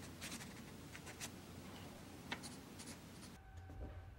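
Faint scratching of a pen on paper: a run of short, irregular scratches and ticks that stops about three and a half seconds in, leaving quiet room tone with a low hum.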